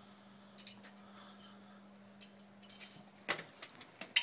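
Small handling clicks, then a sharp knock about three seconds in as a security camera's back box is set against a mounting board. A faint steady low hum runs underneath and stops at the knock.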